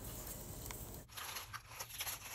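Faint rustling and small clicks as hands handle a paper backer and ribbons while twisting a pipe cleaner.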